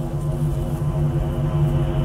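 Hardbass track in a break without drums: a steady, sustained low synth drone.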